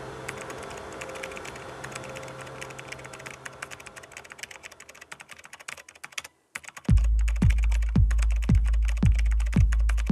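Rapid computer-keyboard typing clicks over a low electronic drone, thinning out and stopping about six seconds in. After a brief silence the rap track's beat drops: a deep kick drum about twice a second over a sustained sub-bass.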